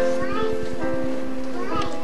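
Children's choir singing held notes of a Christmas song, the voices blended and steady.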